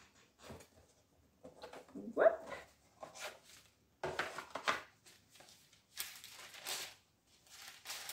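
Cardboard scarf box and its paper wrapping being handled and opened: intermittent rustling and scraping as the lid comes off and the paper is pulled out. A brief rising vocal sound about two seconds in.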